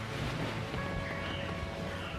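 Background music, with the rustle of a duvet being lifted and pulled back.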